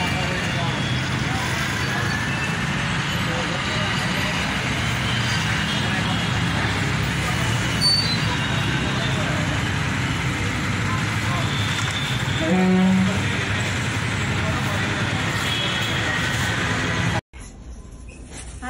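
Steady street and traffic noise with background voices. A short pitched honk about two-thirds of the way through is the loudest sound. The noise cuts off suddenly near the end.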